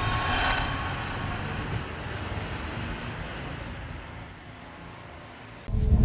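A rumbling whoosh sound effect from a TV channel's animated bumper, fading out over about five seconds. Just before the end, a loud, bass-heavy logo sting cuts in suddenly.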